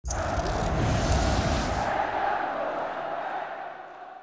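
Intro sound effect for the show's logo card: a loud rushing noise that starts suddenly, holds for about two seconds, then fades steadily away.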